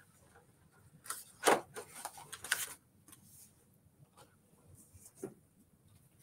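Stiff plastic quilting templates being picked up and handled: a few scattered light taps and clicks, the sharpest about a second and a half in.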